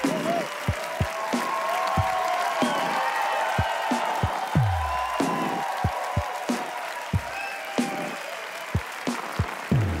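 A theatre audience applauding, with music over it: deep booming hits that drop in pitch, irregularly spaced, and higher sustained tones.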